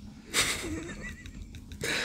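A man's breathy, wheezing laugh. It starts about a third of a second in and grows louder near the end.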